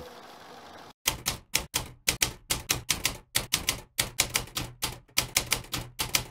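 Typewriter keystroke sound effect: a run of sharp clacks at about four a second, starting about a second in, as text types out letter by letter.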